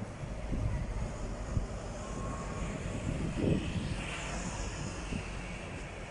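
Road traffic: a steady low engine rumble and road noise, with a vehicle passing close by and swelling louder about midway.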